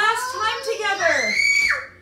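A young child's loud, high-pitched squealing voice, gliding up and down and ending in a held high squeal that stops abruptly.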